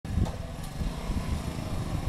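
Bajaj Boxer single-cylinder four-stroke motorcycle engine running as the bike approaches from a distance, a steady low rumble.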